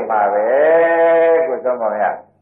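A Burmese monk's voice preaching, with one word drawn out into a long held tone for about a second before it breaks off.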